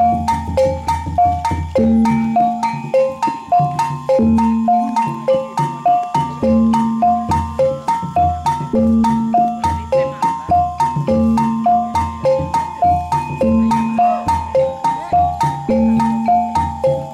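Kuda kepang gamelan music: metallophones repeat a short cycling melody over a deep struck note that comes about every two seconds, with sharp percussion strokes about three times a second.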